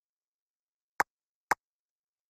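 Two sharp clicks about half a second apart.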